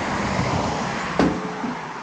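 A steel smoker firebox is set down with a single sharp metal clank about a second in, ringing briefly, over a loud, steady rushing noise.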